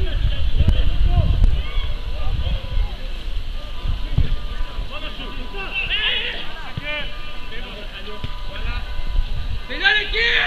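Scattered shouts and calls from players and onlookers during a football match, over a low rumble that is heaviest in the first couple of seconds; a loud shout comes right at the end.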